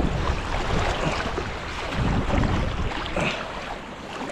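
A hooked steelhead splashing and thrashing at the water's surface as it is scooped into a landing net, over flowing river water, with wind rumbling on the microphone.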